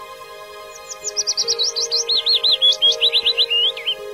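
A songbird singing a quick run of short, high, down-slurred notes. It starts about a second in and steps lower in pitch toward the end, over soft sustained background music.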